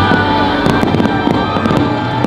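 Aerial fireworks popping and bursting in quick succession, with music playing underneath.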